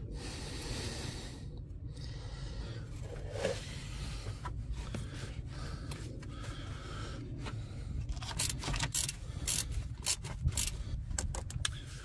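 Hand tools clicking and tapping on metal as the auxiliary water pump's bolts are tightened: a quick, irregular run of sharp clicks begins about eight seconds in, over a low steady background rumble.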